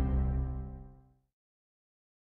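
The last chord of a TV programme's opening theme music ringing out and fading away within about a second.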